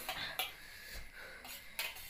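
Faint clinks of a spoon against a steel plate, about twice, over quiet room tone.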